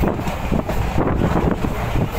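A passenger train coach running along the track, heard from its open doorway: a steady, loud rumble of wheels on rail mixed with heavy wind buffeting the microphone.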